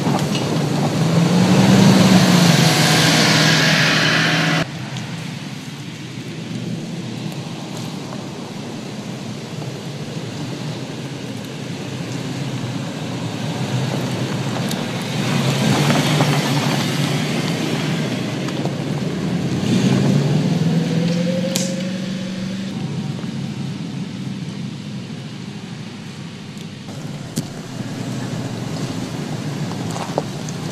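Toyota Land Cruiser's engine revving as it drives a dirt trail, over a steady noise of tyres on loose ground. The engine note climbs about two seconds in and again near twenty seconds. The louder first stretch cuts off abruptly about four and a half seconds in.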